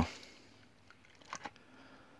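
Quiet, with two faint short clicks about one and a half seconds in: a metal kettle being handled and set down.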